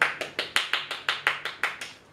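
Hand clapping, about five claps a second, stopping shortly before the end.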